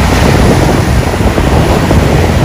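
Ocean surf breaking in the shallows, with loud wind buffeting the microphone.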